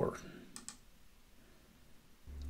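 Two faint, brief computer mouse clicks about half a second in.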